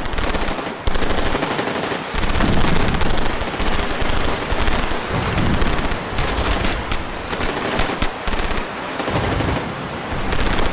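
Battle sound of machine-gun fire in bursts and scattered shots over a continuous low rumble, surging louder about a second in and again several times.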